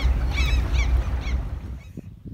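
Outdoor background: a steady low rumble, like wind on the microphone, with a few short, high bird calls about half a second in; the rumble fades shortly before the end.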